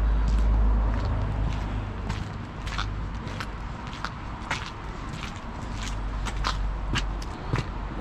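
Footsteps on wet paving slabs, about two steps a second, over a low steady rumble.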